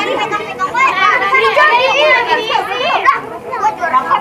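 A crowd of young children shouting and chattering all at once, many high voices overlapping, with a brief dip in loudness a little after three seconds.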